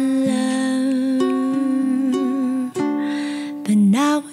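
A woman sings long held notes without clear words, with a solid-mahogany ukulele accompanying her. One note is held for most of the time, then a brief break, and a second note rises near the end.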